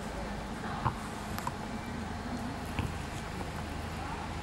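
Bus station ambience: a steady low hum of idling buses, with a few short clicks and knocks, the sharpest about a second in, and faint background voices.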